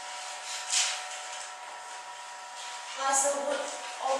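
A woman speaking in short snatches, over a steady hum.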